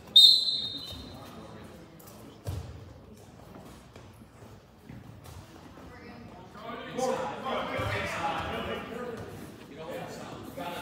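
Referee's whistle blown once, a short shrill tone that fades over about a second, starting a wrestling bout; a single thud on the mat about two and a half seconds in. From about seven seconds in, people shout and call out in the gym.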